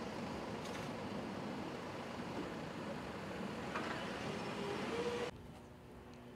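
Steady rushing outdoor background noise that cuts off abruptly about five seconds in.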